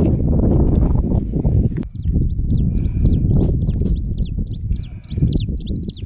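Wind buffeting the microphone in a loud, uneven low rumble. From about two seconds in, a bird calls over it in quick, repeated high chirps.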